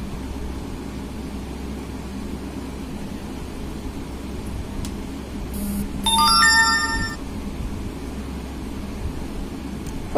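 A short electronic jingle of stepping tones, like a phone ringtone, sounds once about six seconds in and lasts about a second. Under it runs a steady low background hum.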